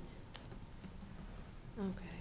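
Light typing on a laptop keyboard: a few scattered key clicks. A short spoken sound, falling in pitch, comes near the end and is the loudest thing.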